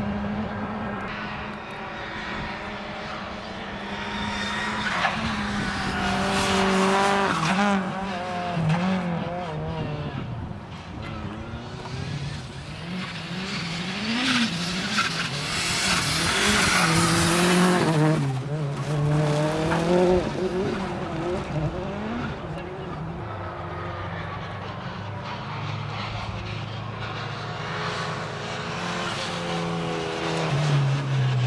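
Rally car engine revving hard and dropping repeatedly as the car is driven flat out through a loose dirt and grass section, with louder stretches of engine and tyre-on-gravel noise about six seconds in and again around fifteen to eighteen seconds as it passes close.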